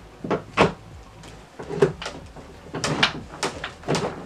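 A broken wooden drawer in a chest of drawers knocking and clunking as it is shoved and worked by hand: a series of sharp wooden knocks.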